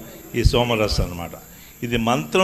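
A man's voice over a microphone: a short phrase, then a pause of under a second with crickets chirping in the background before he speaks again.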